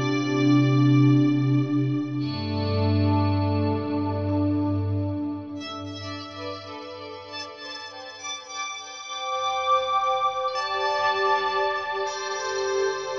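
Clean electric guitar through an Axe-Fx III, with Deluxe Verb amp models feeding two multi-tap delays in parallel on the AH Swell Short and AH Swell Long settings. It plays volume-swelled chords that sustain into a ridiculously lush, delayed wash. The chord changes about two, five and a half, and ten and a half seconds in.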